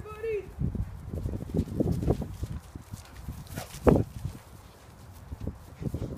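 Irregular soft thumps of running footfalls on grass, with one sharp knock about four seconds in. A short voice, the tail of a laugh, is heard at the very start.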